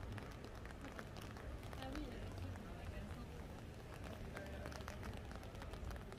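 Footsteps on a wet city sidewalk, with many short irregular taps, over a steady low rumble of street noise and indistinct voices of passers-by.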